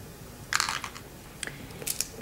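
Light handling noise: a short scuff about half a second in, then a couple of faint clicks.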